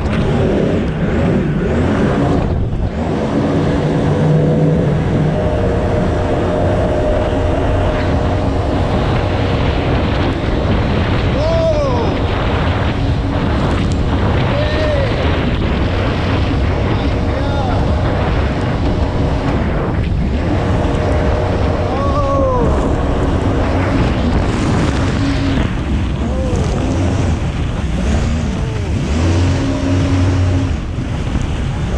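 Engine of a Ferrari-styled water car running steadily at speed, with water rushing and spraying past the hull.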